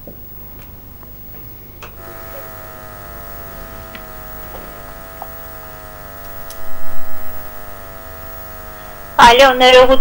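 Steady electrical buzz with many even overtones on a telephone line being patched through to air, starting about two seconds in. A short louder burst comes around seven seconds, and a voice begins near the end.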